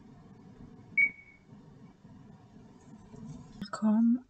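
Low steady room hum with a single short, high-pitched ping about a second in that fades quickly; a man's voice starts just before the end.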